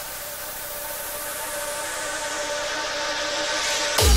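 Breakdown in a hardcore/gabber DJ mix: the kick drum drops out, leaving a white-noise sweep over a couple of held synth tones that grows steadily louder as a build-up, until the kick comes back in at the end.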